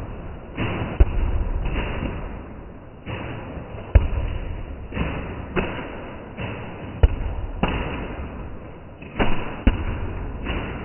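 Nerf foam blasters firing again and again: a string of short puffs, with a sharp knock about every three seconds as foam projectiles strike.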